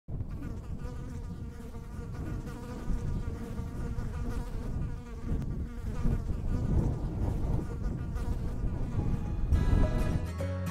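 A swarm of honeybees buzzing, a dense steady hum that swells slightly near the end, as the first notes of music come in.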